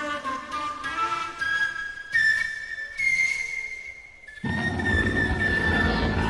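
Live rock band music with a flute: a melodic run gives way to long, held high flute notes over quiet accompaniment. About four and a half seconds in, the full band comes in suddenly and loudly.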